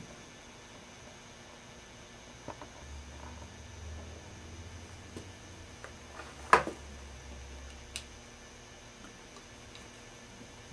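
Quiet room tone with a faint low hum through the middle and a few light clicks; the sharpest click comes about six and a half seconds in, with a smaller one about a second later.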